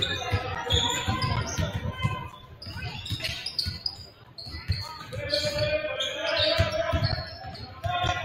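Several basketballs being dribbled and bouncing on a hardwood gym floor, giving irregular, overlapping thuds that echo in the large hall.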